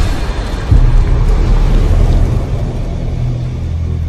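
Cinematic logo-reveal sound effect: a deep rumbling drone under a noisy, swirling hiss that swells about a second in and then slowly eases.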